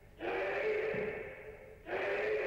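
A karateka's kiai: a loud, drawn-out shout at a steady pitch lasting about a second and a half, then a second shout starting just before the end.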